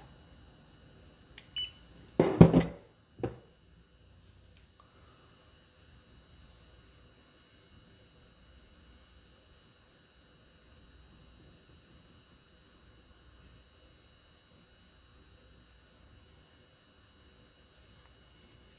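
A dental LED curing light gives a short beep about one and a half seconds in as its cure cycle ends. It is followed by a loud clatter and a smaller knock as the light is set down on the bench. After that there is only a faint, steady, high-pitched whine.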